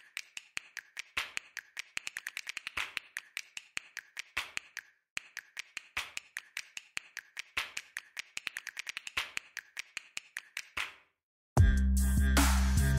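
Masking tape being pulled off the roll, torn and pressed down by hand onto new brake discs: a fast, irregular run of clicks and crackles. After a brief silence, loud music comes in near the end.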